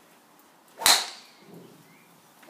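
A golf driver striking a ball once, about a second in: a sharp crack with a brief ringing ping that fades quickly.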